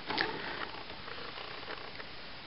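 Faint handling of a plastic Dino Charge Megazord toy figure as it is set standing: a soft plastic click about a fifth of a second in, then a few faint ticks over low room hiss.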